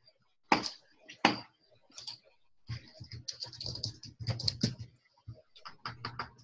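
Typing on a computer keyboard: two loud key strikes in the first second and a half, then a quick run of keystrokes through the middle and more near the end.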